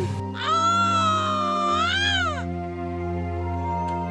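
A woman's long, high-pitched wail of pain, rising and then falling, lasting about two seconds, as her back is pressed. Sustained background music tones run underneath.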